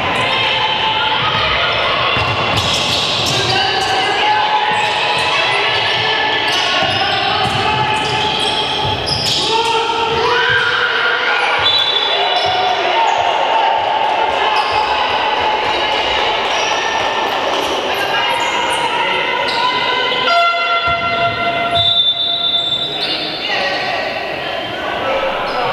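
Live basketball game sounds in a large sports hall: a basketball bouncing on the court amid players' and spectators' voices, echoing in the hall.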